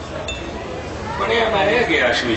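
A brief light clink with a short high ring about a quarter-second in, then a man speaking into a microphone from about a second in.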